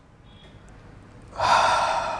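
A man drawing in a deep, audible breath, starting suddenly about one and a half seconds in after a short quiet pause and lasting about a second, as part of a deep-breathing exercise.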